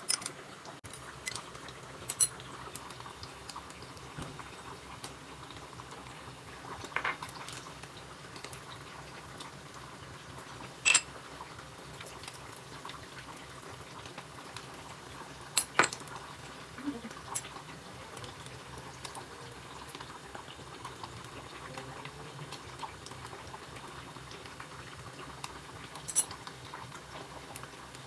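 A metal spoon and other utensils clinking against ceramic bowls and plates: a handful of separate sharp clinks spread out over a steady low hiss.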